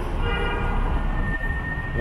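Low rumble of idling and moving cars at a taxi stand. A high, steady whine starts a moment in: several pitches at first, thinning to a single held tone.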